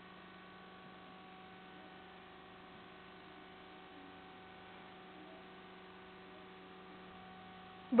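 Faint, steady electrical hum of several even tones, with no other sound.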